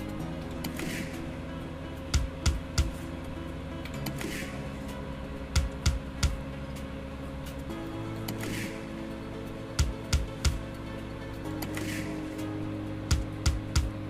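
Online slot game sound: a looping backing tune of steady low tones, with a run of three sharp clicks about every four seconds as the three reels stop one after another at the end of each spin, four spins in all, each spin starting with a short hiss.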